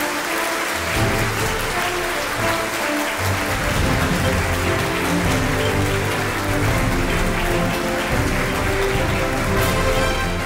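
Walk-on music playing over audience applause as an award is presented; the bass comes in about a second in.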